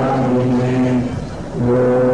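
A man's low voice chanting Sanskrit verse in long, steadily held notes, breaking off briefly a little past the middle before the next held note begins.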